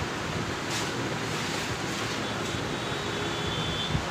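Steady background hiss of room noise, with faint strokes of a marker writing on a whiteboard.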